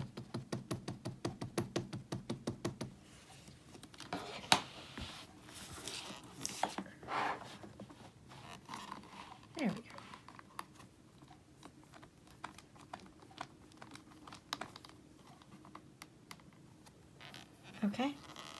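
An ink pad dabbed rapidly against a clear rubber stamp, about seven light taps a second for the first three seconds. Scattered clicks and knocks of the stamp, acrylic block and stamping platform follow, one sharper knock about four and a half seconds in being the loudest.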